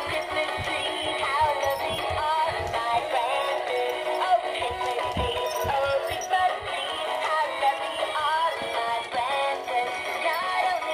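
Battery-powered dancing Santa toy playing a Christmas song with synthesized singing through its small built-in speaker, as the toy moves along.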